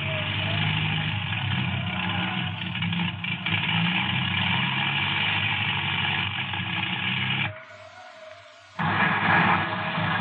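Radio-drama sound effect of a light plane's engine droning steadily under a hiss. It cuts out suddenly about seven and a half seconds in and comes back just over a second later.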